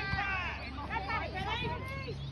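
Several voices shouting and calling across a football pitch during open play, short high-pitched calls that overlap one another.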